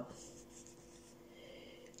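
Near silence: faint room tone with a low, steady hum.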